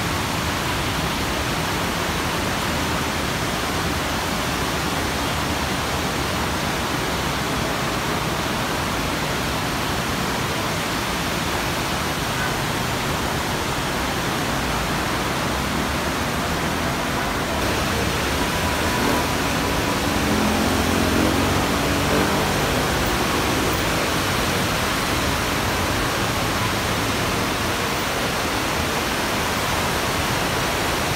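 Heavy rain falling, a steady dense hiss. A short rising tone comes through about two-thirds of the way in.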